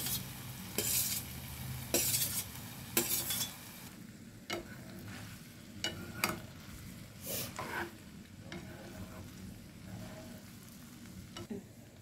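Metal spatula scraping boiled fusilli off a steel plate into a frying pan, three strokes about a second apart, then short taps and stirring in the pan while the masala sizzles lightly underneath.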